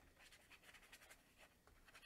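Near silence with faint, quick scratches of a small paintbrush dabbing and stroking paint onto watercolour paper.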